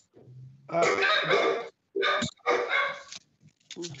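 A dog barking in several loud bursts through a meeting participant's unmuted microphone on a video call.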